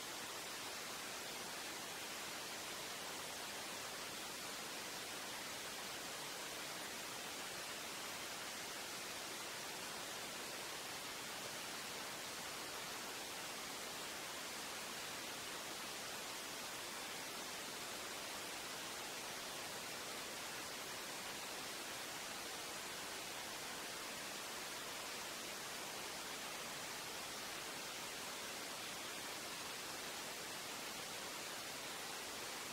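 Steady, even hiss, strongest in the high treble, with no distinct events or changes.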